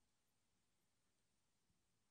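Near silence: a pause in the sermon with essentially no sound.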